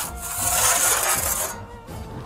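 Metal oven peel scraping across the stone floor of a wood-fired oven, one long scrape that stops about a second and a half in.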